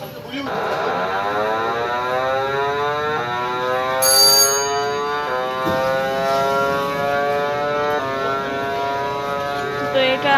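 Carousel drive motor starting up: a whine that rises in pitch over the first few seconds, then holds steady, with a short high hiss about four seconds in.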